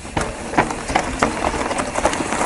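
Mountain bike riding down a rocky dirt trail: tyres rolling and crunching over rock and dirt, with many irregular knocks and rattles from the bike.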